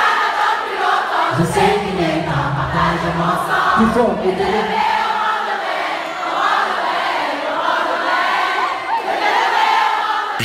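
Large concert audience singing a song together in unison, the many voices carrying the melody on their own without the lead singer.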